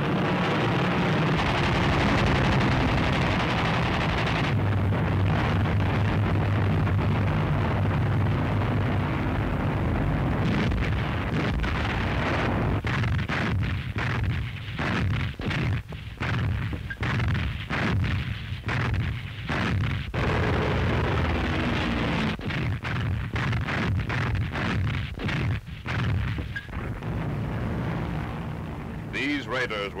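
Massed aircraft engines droning steadily for about the first ten seconds. A dense, irregular run of gunfire-like cracks and bangs follows for about ten seconds, then the engine drone returns with its pitch slowly sliding.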